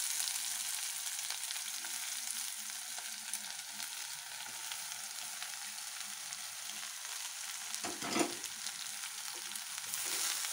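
Shredded jackfruit rind and grated coconut sizzling steadily as they fry in an aluminium pan, with faint scrapes and ticks from being mixed and stirred. A brief louder noise comes about eight seconds in.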